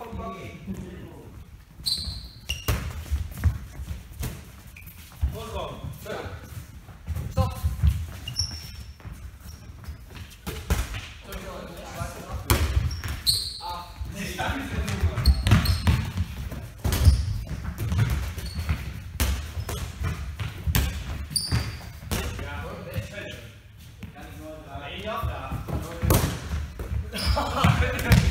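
Foam dodgeballs thudding and bouncing on a sports-hall floor, with sharp knocks scattered throughout. Players' voices and shouts mix in, all echoing in the large hall.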